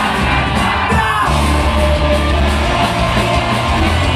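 Punk rock band playing live and loud, with electric guitars, bass and drums under the lead singer singing and shouting into the microphone.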